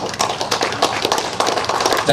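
A small audience clapping, the applause breaking out suddenly as the song ends.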